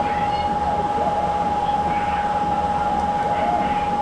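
Steady machine hum with a constant mid-pitched whine running through it.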